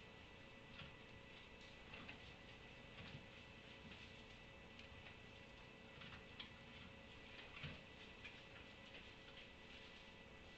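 Near silence: faint barn room tone with a steady low hum and faint, irregular ticks about once a second.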